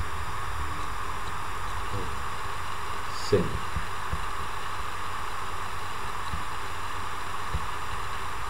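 A steady hiss and hum of background recording noise, with one spoken word about three seconds in.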